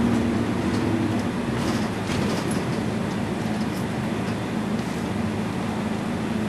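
Cabin noise of a moving route bus: a steady low engine drone with road and body noise, heard from inside as the bus rolls slowly, easing a little after about two seconds.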